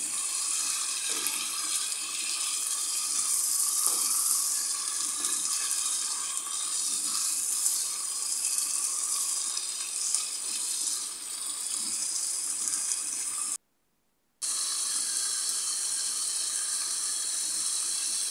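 Minced beef and mixed vegetables sizzling steadily in a frying pan while a wooden spoon stirs them. About three-quarters of the way through, the sound cuts out for under a second.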